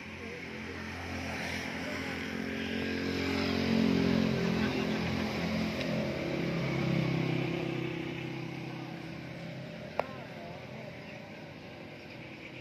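Massey Ferguson 240's three-cylinder diesel engine idling steadily, heard close up, growing louder towards the middle and then easing off. A single sharp click comes near the end.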